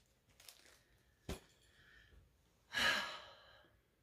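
A sharp click about a second in, then a breathy sigh near the end that fades out.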